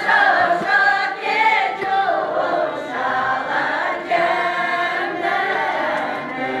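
An Udmurt village folk ensemble singing a folk song together, a choir made up mostly of women's voices.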